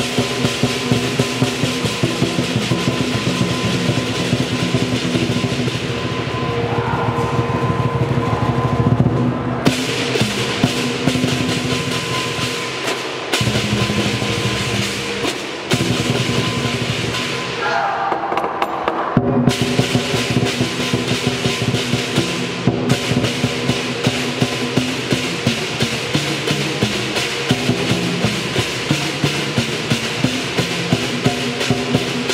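Chinese lion dance percussion ensemble: large barrel drums beaten in a fast, loud rhythm with many pairs of clashing hand cymbals and a gong. Twice the cymbals drop out for a few seconds, leaving the drums.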